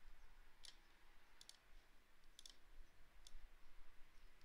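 Faint computer mouse clicks over near-silent room tone, a few single and double clicks spaced about a second apart.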